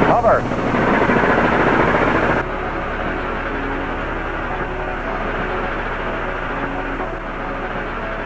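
Thrusters of a Multiple Kill Vehicle test article firing as it hovers: a loud hiss of gas jets. The hiss is loudest for the first two seconds or so, then drops to a steadier, duller rush.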